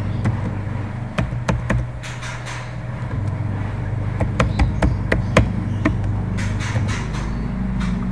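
Computer keyboard being typed on: a run of irregular, sharp key clicks over a steady low hum.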